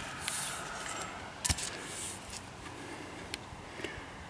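Faint handling noise with a few light clicks and knocks as the axe is moved and turned in the hand, the sharpest about a second and a half in, over a low steady outdoor hiss.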